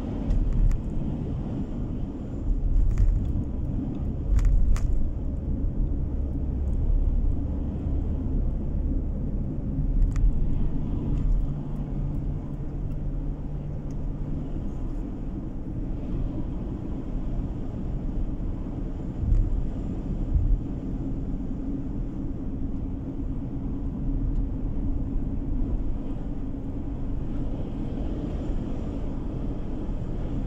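A car driving at steady road speed, heard from inside the cabin: a continuous low engine and tyre rumble, with a few brief low thumps from the road.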